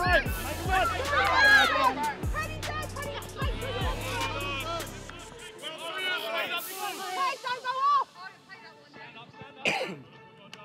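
Shouts and calls from players and touchline spectators across a football pitch, many voices overlapping. A low steady hum runs underneath and stops about halfway through.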